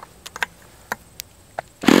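A few sharp clicks and taps as a glow-plug igniter is fitted onto the model engine's glow plug, then near the end a handheld electric starter starts up loudly, spinning the Super Tigre G40 glow engine over.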